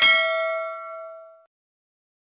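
A single bell-like ding: an end-card chime sound effect that rings out with bright overtones and fades away, gone by about a second and a half in.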